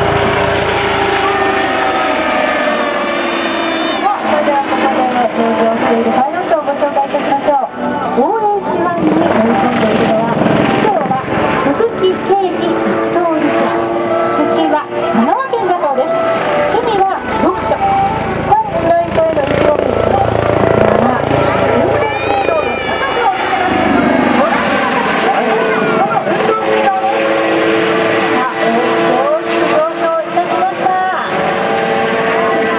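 Kawasaki OH-1 helicopter flying overhead with its rotor and turbine engines running, under the indistinct chatter of people talking nearby.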